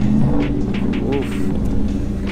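McLaren 720S's twin-turbocharged V8 running at low revs as the car rolls forward slowly, a steady low engine note.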